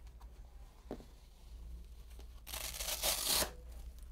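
Velcro fastener of a blood pressure cuff rasping for about a second, a little past halfway, as the cuff is wrapped and fastened round an upper arm. A soft knock comes about a second in.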